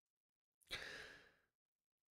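Near silence, broken about three-quarters of a second in by one short, soft, breathy rush of noise that fades out after about half a second.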